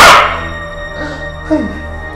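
A hard slap across a man's face at the very start, ringing out briefly, over background music with sustained held tones. About one and a half seconds in comes a short cry that falls in pitch.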